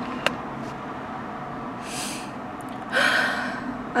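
A woman's breathing while upset and near tears: a short faint breath about two seconds in, then a louder, longer heavy breath about three seconds in.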